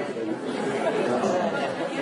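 Speech in a large hall, with overlapping voices talking.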